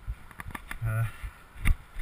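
Running footfalls on a leaf-covered dirt trail, picked up by a chest-mounted camera as a few dull thuds, the loudest near the end.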